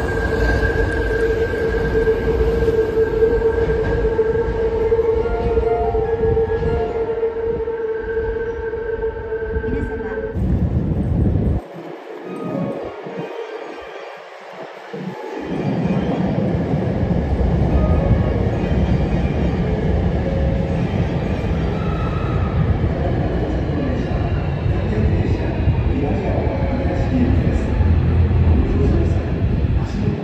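Electric commuter trains moving through a station. In the first third a train runs along the platform with a steady motor whine over a low rumble. After a sudden cut, another train rolls past the platform with a loud low rumble and a faint rising whine near the end, as it speeds up.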